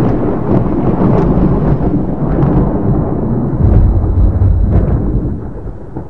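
Thunder sound effect: a long rolling rumble with faint crackles, swelling strongly about two-thirds of the way in and easing off near the end.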